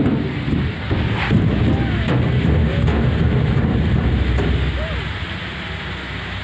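A steady low rumble on a phone's microphone, swelling through the middle seconds and easing off near the end, with faint voices now and then.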